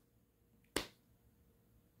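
A single sharp click about three-quarters of a second in, in an otherwise near-silent pause.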